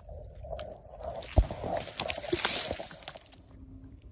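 Dry leaf litter and twigs rustling and crackling as a porcini mushroom is picked from the forest floor, with a sharp knock about one and a half seconds in.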